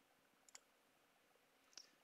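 Near silence with two faint computer mouse clicks, one about half a second in and one near the end.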